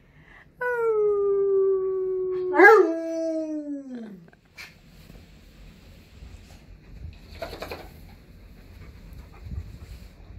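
A dog's long howl, held near one pitch for about two seconds, breaking once, then sliding down and fading out about four seconds in. A short noise follows a few seconds later.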